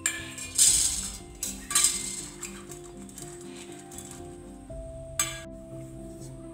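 Stainless-steel perforated idiyappam plates clinking and scraping against each other as they are handled and greased, over background music. Two loud clattering scrapes come about half a second and about two seconds in, and a single sharp clink comes a little after five seconds.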